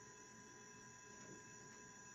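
Near silence: faint room tone with a steady, faint high-pitched electrical whine.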